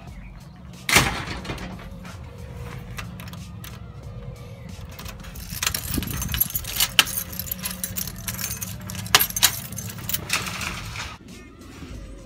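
Keys jangling and a key clicking and turning in a door lock over the second half, over steady background music. A single loud bang about a second in.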